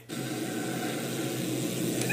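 Steady hiss with a low hum underneath: the background noise of an old recorded interview during a pause in speech.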